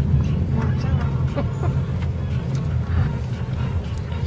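Steady low rumble of a car's engine and tyres heard from inside the cabin as it drives slowly, with faint voices in the background.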